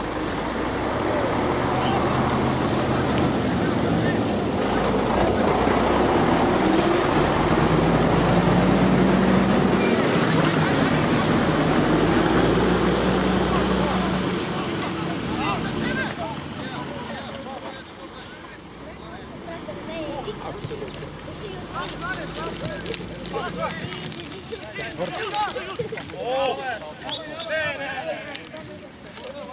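An engine passing by, a low steady rumble that swells to its loudest about ten seconds in and fades away by about sixteen seconds. Shouting voices from the pitch follow.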